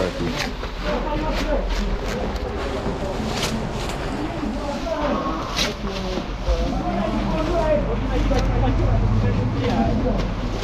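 Several people talking indistinctly, with drawn-out exclamations near the end, over scattered knocks and scrapes as runners crawl through a concrete culvert pipe. A low steady rumble grows louder in the second half.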